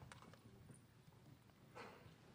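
Near silence in a large hall, with a few faint footsteps on the stage floor.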